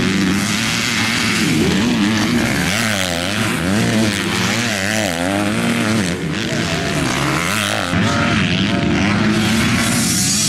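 Motocross dirt bike engines revving hard, the pitch climbing and dropping again and again with throttle and gear changes as the bikes race past.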